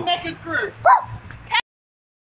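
Excited human voices whooping and yelling in short, high, gliding cries that cut off abruptly about a second and a half in, followed by dead silence.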